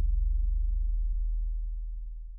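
Deep, low tone of an intro sound effect, steady at first and then slowly fading away.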